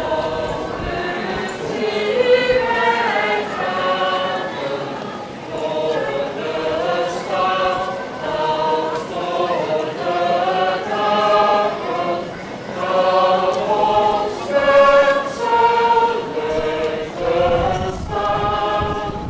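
A choir singing a slow melody in held notes, phrase after phrase.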